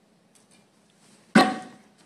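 A single sharp smack about halfway through as a martial-arts hand strike hits a board held up for breaking, with a brief ringing that fades within half a second. The board does not break.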